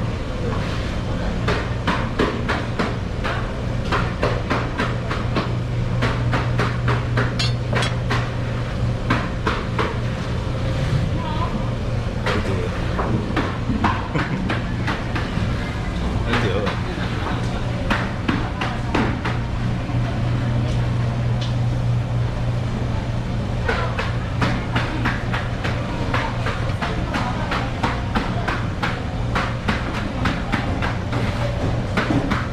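Chef's knife knocking and tapping on a wooden cutting board as a cantaloupe is sliced, in many short irregular knocks, over a steady low hum.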